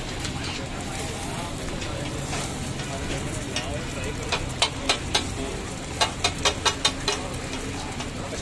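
Eggs sizzling steadily on a flat metal street-food griddle, with metal spatulas clinking against the griddle plate: a few sharp taps around the middle and a quick run of about five taps in a second near the end.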